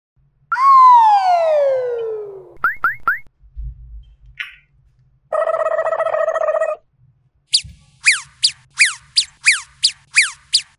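A string of cartoon sound effects. First a long falling slide-whistle glide, then three quick rising zips and a low thump, a steady buzzer-like chord lasting about a second and a half, and near the end a rapid run of about nine short falling chirps.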